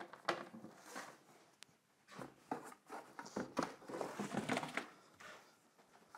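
Unpacking handling noise: cardboard carton and packing rustling and scraping as bookshelf speakers are pulled out and set down on a table, with a few light knocks.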